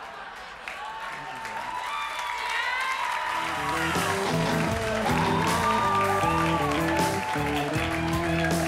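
Audience laughing and applauding while walk-off music comes up and grows louder, its bass line coming in about three seconds in.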